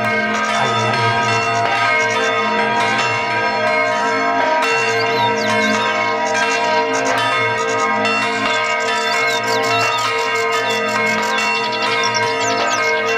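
Several church bells pealing together, struck again and again, their tones ringing on and overlapping into a continuous clangour.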